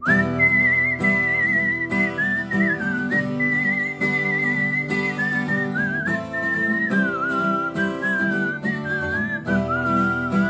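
A man whistling a melody over his own strummed acoustic guitar. The whistle comes in at the start with a quick upward slide, then moves between held notes while the steady strumming goes on beneath it.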